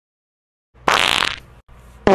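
Near silence, then about a second in a short fart-like noise lasting about half a second that fades out.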